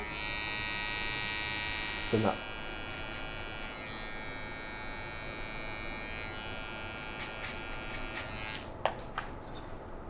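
Cordless hair clipper running steadily while trimming around the ear. A short vocal sound comes about two seconds in. The clipper's hum fades out around seven seconds, followed by a few light clicks.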